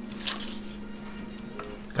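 Faint rustles and light taps from a small paper box being handled, over a steady low hum.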